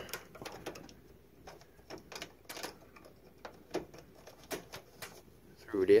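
Irregular small clicks and rustles of an electrical pigtail cord being fished through a hole in a furnace's sheet-metal cabinet, the wires brushing and tapping against the metal.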